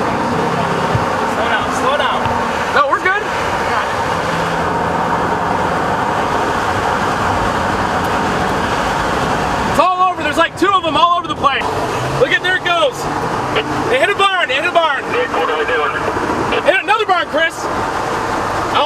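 Steady rushing of wind and road noise inside a moving chase vehicle approaching a tornado. From about ten seconds in the noise turns gusty and uneven as the vehicle enters dusty, debris-filled winds, with excited voices shouting over it.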